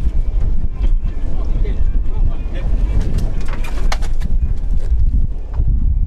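Wind buffeting the microphone on an open boat, a loud, steady low rumble, with a few sharp knocks and clicks on board about a second in and again past the halfway point.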